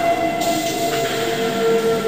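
Droning electronic soundscape: steady held tones over a rushing, train-like noise. The higher tone fades out as a lower one comes in about half a second in.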